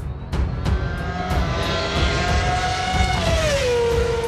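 Title-sequence music with regular drum hits, overlaid by a vehicle-engine sound effect. The engine holds a steady pitch, then drops in pitch about three seconds in, like a vehicle passing by.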